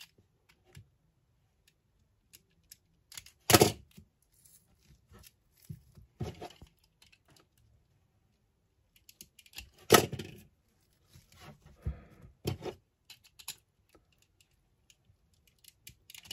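Utility knife blade slicing and scraping through the thick rubber insulation of a 4/0 battery cable: a few short, separate cuts with small clicks between, the loudest about three and a half and ten seconds in.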